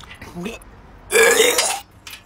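A man gagging on fermented herring (surströmming): a small low throat sound about a quarter second in, then a loud retching heave lasting a little over half a second in the second half.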